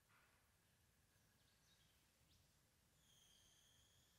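Near silence: room tone, with a few very faint, thin, high-pitched tones and short chirps, the clearest a held high tone about three seconds in.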